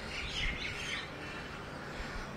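Faint bird chirping in the first second, over a low outdoor background.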